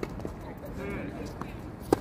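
Tennis rally on a hard court: a couple of ball hits and bounces, the loudest a racket striking the ball just before the end.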